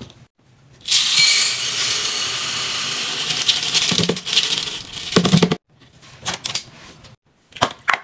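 Downy scent-booster beads pouring from the plastic bottle into a glass jar in a steady stream, starting about a second in and lasting about four and a half seconds, with a couple of knocks near the end. Then a few short clicks follow.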